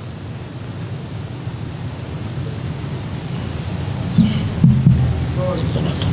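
A steady low rumble from the mosque's microphone and sound system slowly grows louder. About four to five seconds in there are a few short, louder voice sounds and jolts at the microphone.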